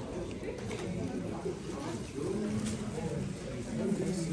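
Muffled murmur of low voices in a quiet cinema auditorium, with a low hum about two seconds in.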